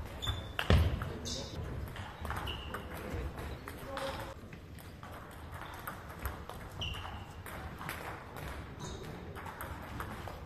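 Table tennis being played in a large sports hall: the ball clicking off bats and table in quick rallies, with a few short squeaks of shoes on the hall floor.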